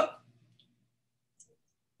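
A brief spoken "oh" at the start, then near silence on a video-call line, broken only by one faint click about a second and a half in.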